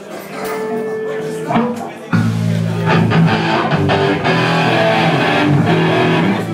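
Amplified guitar: a few held single notes, then about two seconds in, loud strummed chords begin over steady low notes.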